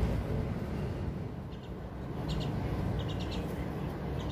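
Bird chirping: short high chirps in quick clusters of two to four, starting about a second and a half in, over a steady low rumble.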